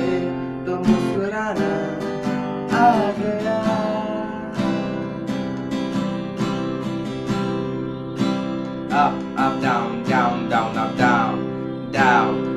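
Cutaway steel-string acoustic guitar strummed with open chords, playing a down-down-up-up-down-down-down-up pattern, each chord ringing between strokes.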